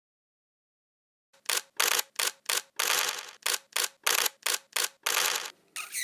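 Outro sound effect: after a second and a half of silence, a quick, uneven run of about a dozen sharp clicks and short noise bursts, with a brief gliding whistle-like tone at the very end.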